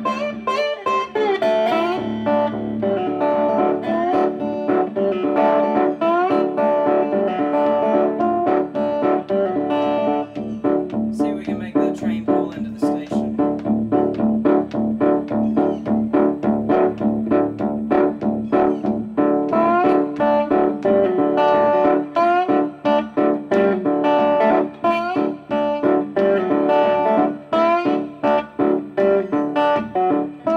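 Homemade electric license-plate guitar played slide-style through a small amplifier, in North Mississippi hill country blues. Picked notes glide between pitches over a steady bass drone.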